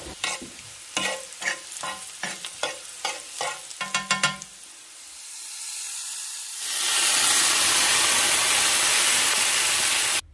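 Diced radishes frying in oil in a cast-iron skillet, with a utensil scraping and stirring them two to three times a second for the first four seconds. About two-thirds of the way through, rice vinegar hits the hot pan and the sizzle jumps to a loud, steady hiss as it boils off in steam.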